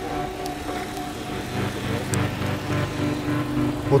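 A car engine idling with a steady low rumble under street noise, with faint sustained tones, possibly background music, over it.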